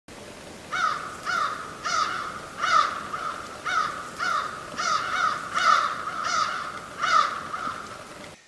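Crow cawing: a series of about a dozen calls, roughly one every half to three-quarters of a second.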